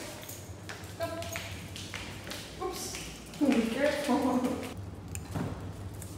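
A woman's wordless murmuring in short bursts, the longest in the middle, with a few light taps and clicks.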